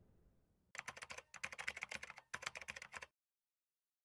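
Computer keyboard typing sound effect: quick runs of key clicks in three bursts, starting under a second in and stopping abruptly about three seconds in.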